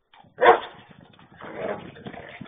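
German shepherd barking during rough play, picked up by a security camera's microphone: one sharp, loud bark about half a second in, then a longer, quieter bark around a second and a half.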